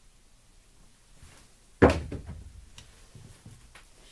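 A pair of craps dice lobbed down a felt-covered craps table: a sharp knock about two seconds in as they land, then several lighter clicks as they bounce and settle.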